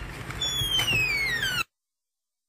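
The hip hop beat's outro: low bass under a high whistle-like tone that falls steadily in pitch like a bomb-drop effect. The track cuts off suddenly about a second and a half in.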